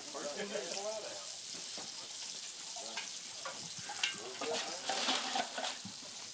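Steady sizzling hiss of food frying in a pan, with a few faint clicks and voices talking faintly in the background.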